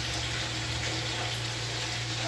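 Curry gravy sizzling steadily in a pot on the stove, with cubed taro just added, over a low steady hum.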